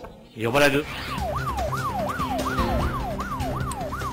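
A TV news channel's 'breaking news' sting: a siren-like tone that sweeps up sharply and slides back down about three times a second, over a steady low music bed, starting about a second in after a brief word of speech.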